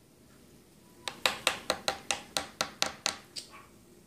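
A quick run of about a dozen light, sharp taps, about five a second, starting about a second in and stopping after a little over two seconds.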